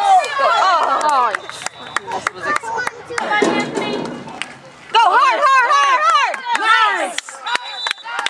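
Spectators shouting and cheering, with voices raised near the start and again in the second half, a noisy stretch of cheering in the middle, and sharp clicks scattered throughout.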